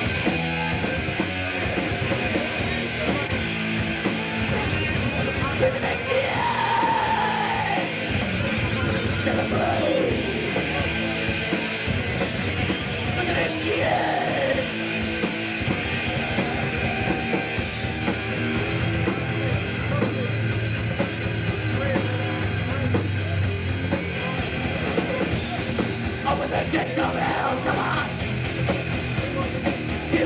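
Thrash metal band playing live: distorted electric guitars over fast, busy drumming, dense and unbroken throughout.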